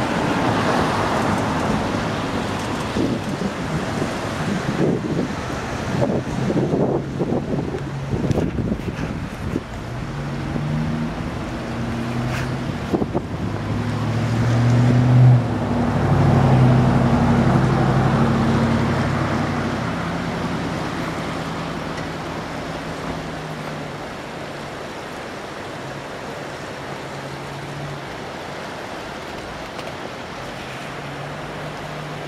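Steady rush of the flooded Russian River, with wind gusting on the microphone during the first ten seconds. From about ten seconds in, a passing vehicle's low engine hum builds to a peak a little past the middle and then fades away.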